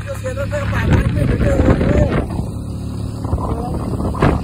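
Engine of the open vehicle being ridden, running steadily at speed, with wind on the microphone. A voice cries out in a wavering pitch over it in the first two seconds, and again briefly near the end.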